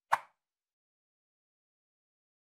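A single short pop sound effect near the start, dying away within about a quarter of a second.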